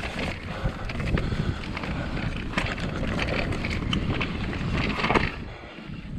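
Mountain bike riding fast down a dirt forest singletrack: tyres rolling over the dirt, the bike clattering over bumps, and wind rushing over the microphone. The noise drops away briefly near the end.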